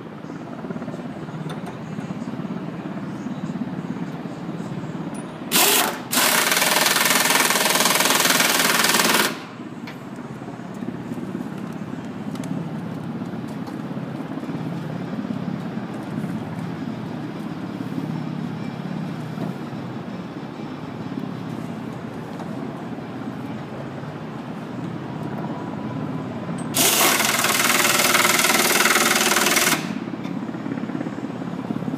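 Pneumatic impact wrench hammering in two long bursts of about three seconds each, the first preceded by a brief blip, as it drives bolts down into heavy timbers. Between the bursts there is a steady background rumble.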